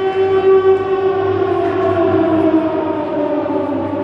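The routine's music track playing a long siren-like sound effect, one sustained tone gliding slowly down in pitch.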